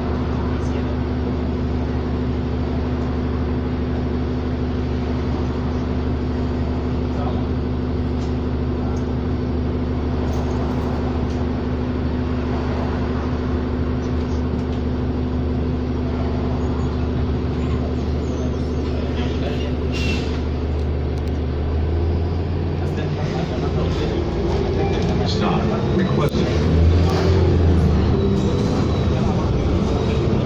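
2007 New Flyer D40LFR city bus's diesel engine idling steadily, heard inside the cabin. About 22 seconds in the engine note changes and grows louder as the bus pulls away.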